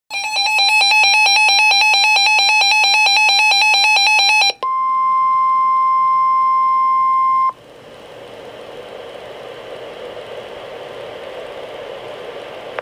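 Reecom R-1630 Public Alert weather radio sounding its warning alarm: a rapid two-pitch electronic beeping for about four and a half seconds. Next comes a steady single tone of about 1 kHz, the NOAA Weather Radio 1050 Hz warning alert tone, which cuts off sharply after about three seconds. After that comes the broadcast's background hiss, which signals that a warning message is about to be read.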